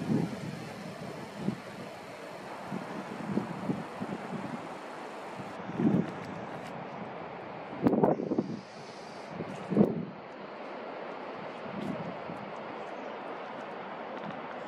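Wind buffeting the camera microphone in irregular gusts, over a steady rushing hiss.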